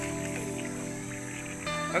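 Soft background music of sustained, held tones.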